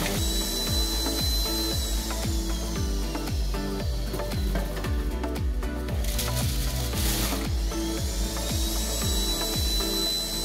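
Electric juicer motor running under load as carrots are pressed through on a high setting. Its high whine sags slowly in pitch and climbs back near the end, with a brief rougher burst about seven seconds in. Background music with a steady beat plays over it.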